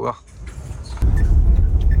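Loud, steady low rumble of a moving vehicle's engine and road noise heard from inside its cab, starting suddenly about halfway through after a quieter first second.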